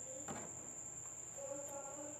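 A faint, steady high-pitched whine that holds one unchanging pitch, with a brief soft rustle about a third of a second in and faint low hums near the end.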